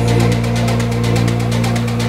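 Melodic techno track: a held synth bass chord under fast, steady hi-hat ticks, with no vocal.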